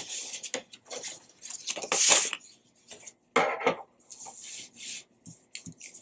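Construction paper rustling and sliding on a tabletop as folded paper and small cut-out paper feather shapes are handled and laid out, in irregular short bursts, the loudest about two seconds in.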